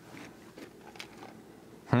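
Faint nose sniffs at an opened cardboard chip can, with a few small handling clicks, then a hummed 'hmm' near the end.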